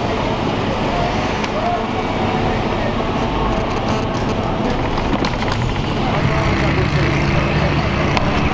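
Engine and road noise inside a patrol car's cabin while it drives, a steady rumble throughout.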